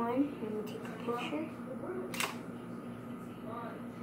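A single sharp click about halfway through, typical of a DSLR camera's shutter firing, against quiet voices.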